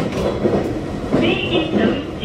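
Running noise of a JR Kyushu 817 series electric train heard from inside the car as it travels at speed, with a voice heard briefly about a second in.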